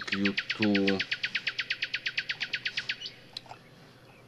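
A small bird sings one rapid trill of high, falling notes, about a dozen a second, lasting about three seconds.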